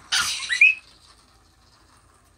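A Lhasa Apso puppy's single short, high yap, its pitch rising at the end.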